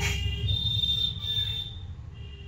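A high-pitched tone that starts about half a second in and holds steady for over a second, over a low hum.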